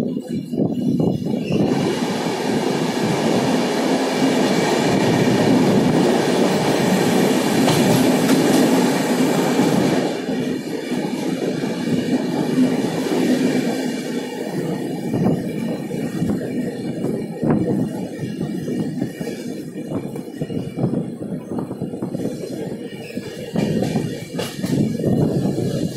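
Passenger train running at speed, heard from an open coach door: wheels rumbling on the rails. About two seconds in the sound swells into a loud hiss-laden roar, as in a short tunnel. About ten seconds in it drops back to a lower rumble with the clicking of wheels over rail joints.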